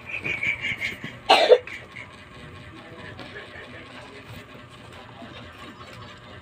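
A young girl coughing, with a quick run of short sounds and then one loud cough just over a second in.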